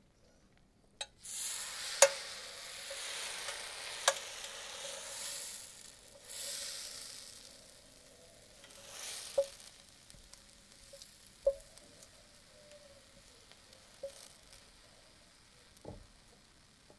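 Wooden T-shaped crepe spreader swept around through batter on a hot electric crepe plate: a hissing scrape that swells and fades in waves for the first nine seconds or so, with a few sharp taps of the wood on the plate. After that the thin crepe cooks with a faint sizzle and occasional taps.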